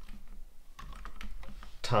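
Typing on a computer keyboard: a quick run of separate keystroke clicks as a short word is entered.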